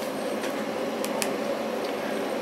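Steady even noise of a running home still (4-inch column on a 48-litre boiler), with two short clicks, about a second in and near the end, as mobile phone keys are pressed to stop a stopwatch timing the spirit flow.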